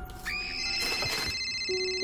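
Telephone ringing: a steady, high electronic ring starting about a quarter second in, with a few low held notes joining near the end.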